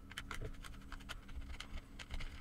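Faint, irregular small clicks and scrapes of hands handling small metal and plastic parts: an Ethernet wall socket and its metal mounting box having their screws taken out.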